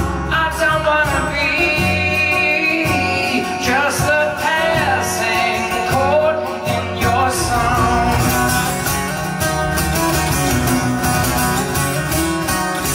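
Acoustic guitar played live in an extended instrumental passage, with notes that bend and waver over a steady low accompaniment.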